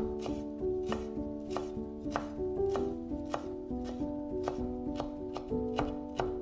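A chef's knife chopping fresh dill on a wooden cutting board, the blade knocking the board in an even rhythm of about three strokes a second. Soft background music plays underneath.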